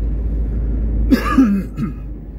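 Low, steady rumble of a car driving, heard from inside the cabin. About a second in, a short cough-like sound from a person in the car breaks in briefly.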